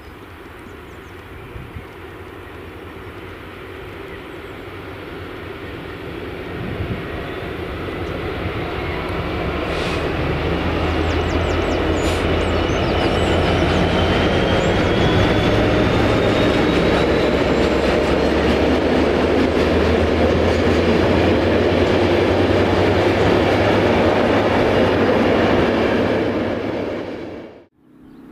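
Diesel-hauled freight train approaching, growing steadily louder over about the first twelve seconds, then passing close at a steady loud level with a low engine drone under the rumble of the train.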